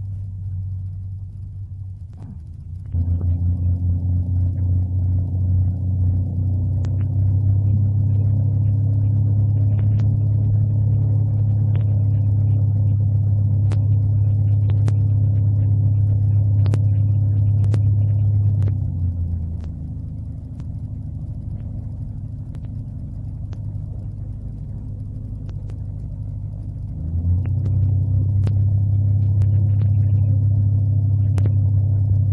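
Corvair 3.0 air-cooled flat-six engine and propeller heard from inside the cockpit, running at low power with a steady low throb. The power steps up about three seconds in and rises again a few seconds later. It drops back about two-thirds of the way through, then comes up again near the end.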